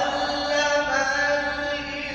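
A man reciting the Quran in the melodic chanted style, holding one long sustained note that slides slightly in pitch.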